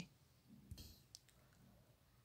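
Near silence: room tone, with a faint brief noise a little under a second in and a tiny click just after it.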